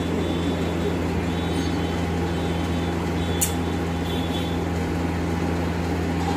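Steady low machine hum, even in level throughout, with one sharp click about three and a half seconds in.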